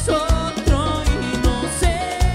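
Cuarteto band playing live, a steady dance beat on bass drum and percussion under accordion and keyboards, with a male lead singer singing.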